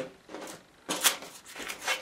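Watercolour paper and bulldog clips being handled at the edge of a drawing board as the paper is reclipped: about three short rustling scrapes.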